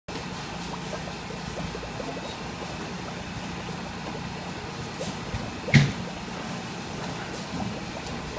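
Steady trickle of water circulating in a live-prawn holding tank, over a low steady hum. A single sharp knock, the loudest sound, comes a little before six seconds in.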